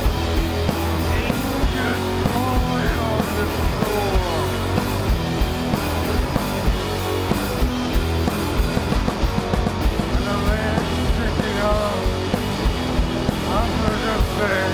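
Noise rock band playing live: distorted electric guitars, bass and a steady pounding drum beat, with a singer's vocals coming in at times.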